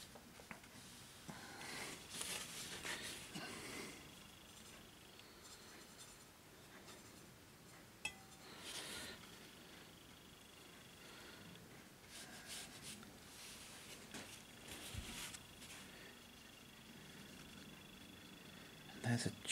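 Faint scratching of a watercolour brush stroking across paper, coming in several soft, short bursts, with a light click about eight seconds in.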